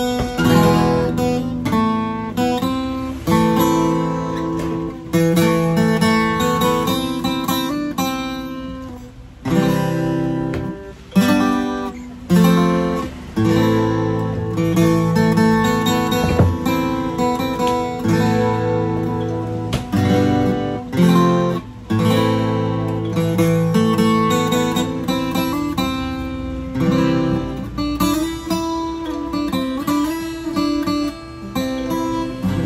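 A Morris dreadnought acoustic guitar played solo, plucked chords and melody notes ringing out, with brief breaks between phrases.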